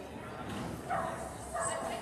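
Dog barking, with people talking in the background.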